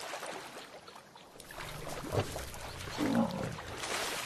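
A lion growling once about three seconds in, over water splashing as lions wade through a shallow river and a low rumble that starts partway through.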